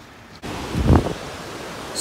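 Wind and ocean surf on the microphone: a steady rushing noise that starts abruptly about half a second in, with a deep low rumble of wind buffeting near the one-second mark.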